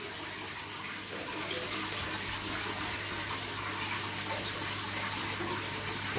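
Water splashing and churning steadily at the surface of a large aquarium as it is refilled through a hose and stirred by the outflow of two Fluval FX6 canister filters, with a steady low hum underneath.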